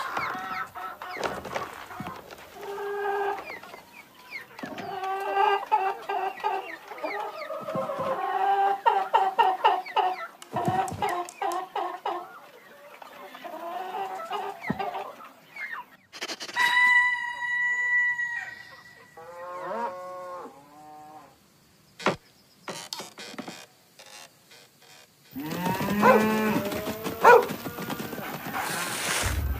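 Cartoon farm-animal calls: runs of short clucking calls through the first half, then a long held call, a few falling calls and some sharp clicks, and a louder burst of calls near the end.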